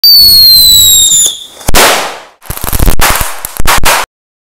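Paper-wrapped whistling thunder firecracker: a high whistle, falling slightly in pitch, for just over a second, then a loud bang. A rapid run of crackling bangs and two more sharp bangs follow near the end.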